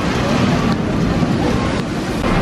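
Zierer tower roller coaster train running along its steel track, a steady rumble, with wind buffeting the microphone.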